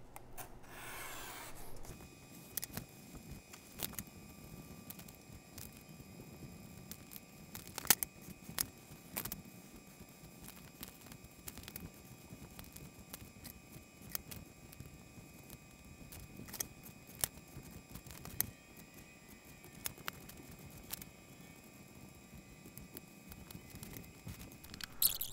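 Razor blade drawn through foam board along a metal straight edge, a scraping rasp in the first two seconds. Then scattered light clicks and taps as the cut foam pieces are pressed out and handled.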